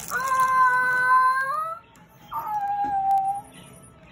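A young girl's voice: two drawn-out, high-pitched exclamations. The first is held steady for nearly two seconds; the second is shorter and drops in pitch at its start.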